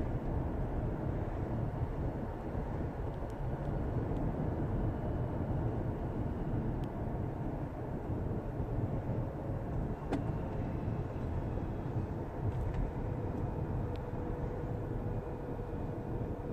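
Car being driven on a city street, heard from inside the cabin: a steady low rumble of engine and tyre noise, with a few faint clicks.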